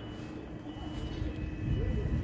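Outdoor urban background noise: a low rumble that grows louder from about a second in, with a faint steady hum.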